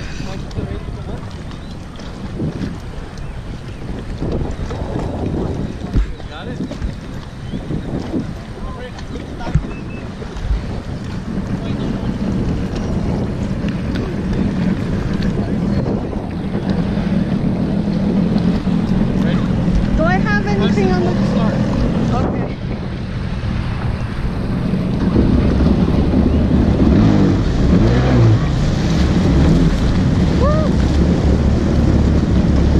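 Yamaha jet ski engine running at low speed, a steady low hum with wind buffeting the microphone; it grows louder in the last few seconds.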